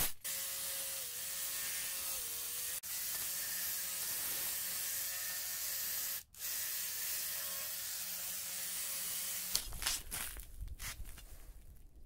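Battery-powered handheld tool driving a steel rod tipped with a car brake pad backing plate, chipping and scraping ice off paving: a steady harsh scraping hiss over a faint motor hum, cut off briefly twice. Near the end the tool stops and a few irregular knocks and clicks follow.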